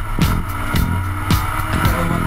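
Rock music with a steady drum beat and a moving bass line.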